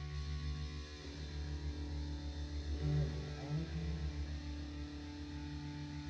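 Noise-rock band playing live: electric guitar and bass holding long, droning notes, with a low drone underneath; the held pitches shift about a second in.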